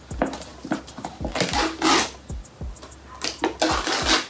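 Pencil punching and tearing through the seal of a whey protein tub, crackling scrapes in two bursts, over background music with a low steady beat.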